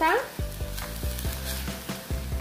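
Chopped broccoli leaves sautéing in oil in a pan, sizzling while a spatula stirs them with light scraping strokes.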